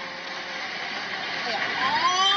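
Steady rushing noise of fast-flowing floodwater, with a man's voice rising into a drawn-out call near the end.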